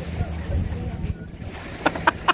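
Wind buffeting the microphone with a low rumble that dies away about a second in, over faint background voices. Right at the end a sharp, rapid series of loud pulses begins.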